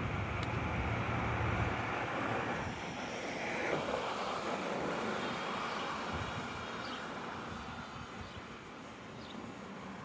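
Outdoor street ambience with a vehicle passing: its noise swells about four seconds in and fades slowly away, with wind buffeting the microphone in the first couple of seconds.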